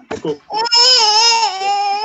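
A high, drawn-out wavering voice over the call audio. A couple of short syllables come first, then one long cry-like sound that starts about half a second in and is held for about a second and a half.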